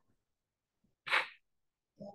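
A single short, sharp burst of breath noise from a person, sneeze-like, about a second in; apart from that, near silence.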